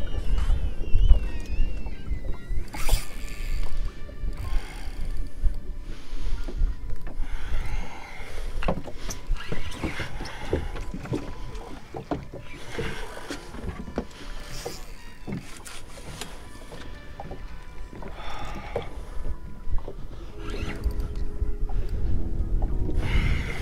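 Choppy lake water lapping and slapping against the hull of a small fishing boat, in repeated short washes, with wind rumbling on the microphone and scattered sharp knocks.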